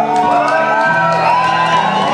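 Live rock band playing amplified through the PA with drums and electric guitars, heard from within the audience in a large hall, with whoops and shouts from the crowd.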